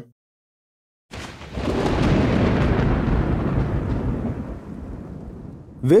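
A roll of thunder: after about a second of silence a deep rumble starts suddenly, swells quickly and then slowly fades away over about four seconds.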